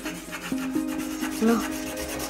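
Crayon rubbing and scratching across paper as a child draws.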